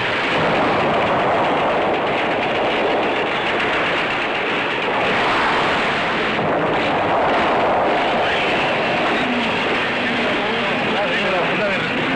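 A loud, steady roar of dense noise from a film sound-effects track, with a few faint wavering tones in the last few seconds.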